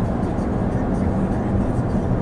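Steady road noise inside the cabin of a 2020 Chevrolet Equinox on the move: an even, low rumble of tyres and drivetrain.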